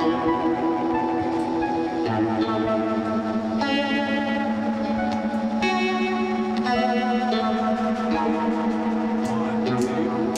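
Band music: acoustic guitar and a keyboard synthesizer playing sustained chords that change every second or two, with no drums and no singing.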